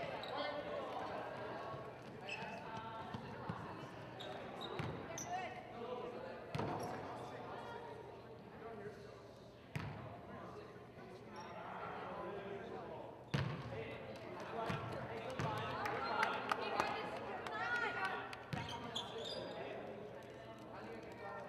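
A basketball bouncing on a hardwood gym floor: a few single bounces a couple of seconds apart, the loudest about 13 seconds in, under a murmur of indistinct voices in the gym.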